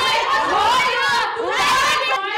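Several young voices shouting and yelling over one another, with no clear words.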